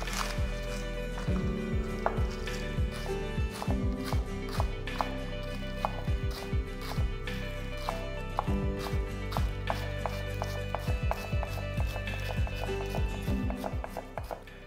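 Chef's knife slicing green onions on a wooden cutting board: quick, uneven taps of the blade on the board, a few a second, over soft guitar background music.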